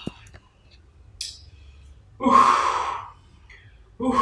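A man's breathy, whispered voice: a small click right at the start, a short hiss about a second in, then a longer breathy whisper a little after two seconds.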